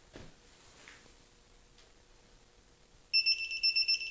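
Mastercraft digital torque wrench beeping: after about three quiet seconds, a fast run of short high-pitched beeps starts as the head bolt is pulled up toward the 60 N·m setting, the wrench's signal that the target torque is almost reached.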